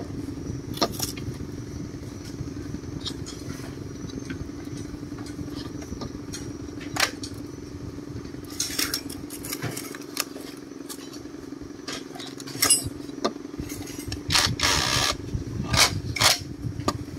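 Scattered metal clinks and knocks from used grass-trimmer engine heads being handled and checked, with a few longer clattering bursts about nine seconds in and again near the end. A steady low hum runs underneath.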